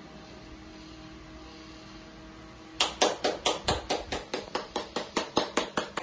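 Electric desk fan running with a faint steady hum. About three seconds in the hum stops and a fast, even run of sharp clicks or taps begins, about five a second.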